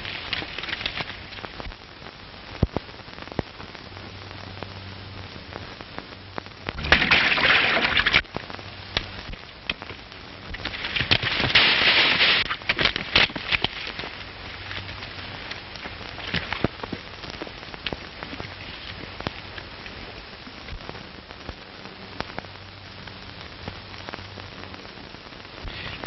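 Hiss and crackle of a worn old optical film soundtrack, dotted with clicks over a faint low hum. Two louder rushing noises come through it, about seven seconds in and again about eleven seconds in.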